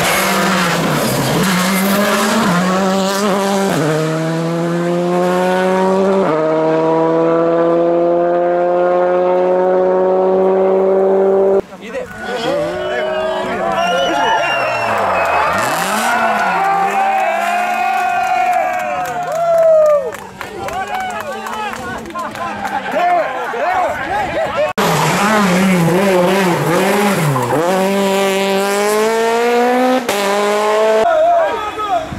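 Rally cars' engines at full throttle on a closed stage, in three separate passes. First one car accelerates hard, its revs climbing through two upshifts. Then a car's revs rise and fall sharply as it brakes and powers round a hairpin, and then a car accelerates again.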